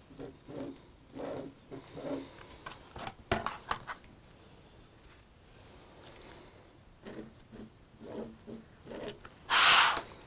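Fabric marking pen drawing lines on small fabric squares held under an acrylic quilting ruler: soft rubbing and handling sounds with a few light clicks. Near the end comes a brief, louder scrape as the ruler is slid away across the cutting mat.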